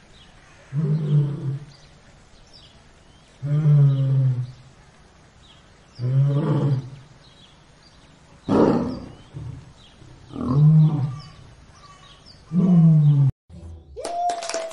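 Lion roaring: a series of six deep, pitched calls, each about a second long and coming every two seconds or so, cut off suddenly just before the end.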